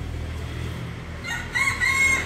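A rooster crowing: one long held call that starts a little over halfway in.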